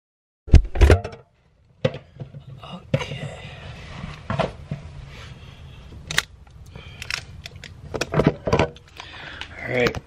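Food being handled inside a refrigerator: two loud thumps just under a second in, then scattered knocks, clicks and rustling as containers and bags are moved about on the shelves.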